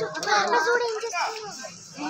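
Indistinct, high-pitched voices talking, with no clear words.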